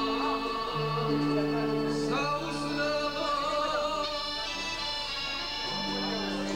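A man singing a folk melody with a wavering voice, accompanied by a button accordion holding long, steady chords and bass notes.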